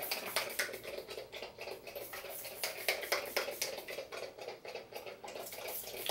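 Pink pump spray bottle of rose water spritzed at the face over and over, a quick run of short sprays at about three or four a second.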